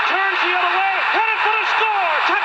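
Television play-by-play announcer calling the run in a raised, high-pitched voice with drawn-out syllables, over steady stadium crowd noise, played through a TV speaker.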